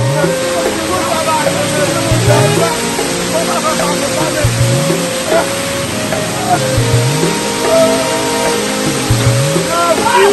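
Waterfall water rushing down onto rocks, a loud steady hiss that cuts in at the start, heard together with music whose low note rises about every two seconds.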